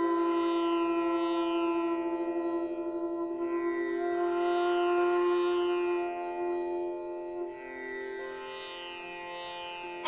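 Hotchiku, an end-blown bamboo flute, playing long held notes with a meditative feel, over a buzzing plucked-string drone. The sound grows quieter in the second half.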